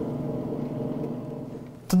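Simulated aircraft engine sound from a flight simulator's speakers after touchdown: a steady drone that fades away near the end.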